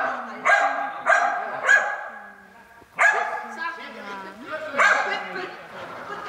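Dog barking, with three barks about half a second apart at the start, then single barks about three and five seconds in, each ringing on in a large hall.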